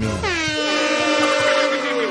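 A held horn-like tone, several pitched notes sounding together, that slides down briefly at the start and then holds steady.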